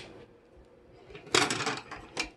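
A short clatter of kitchen utensils and dishes, a quick run of clinks and knocks about one and a half seconds in.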